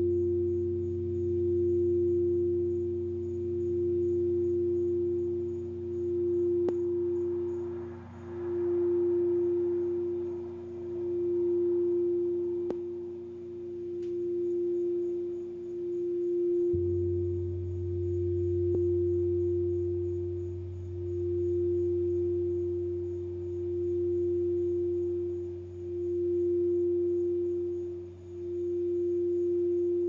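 Crystal singing bowl being rimmed with a wand, holding one steady pure tone that swells and fades in a slow wobble about every two seconds. Deeper humming tones sound beneath it and shift to a different pitch about halfway through.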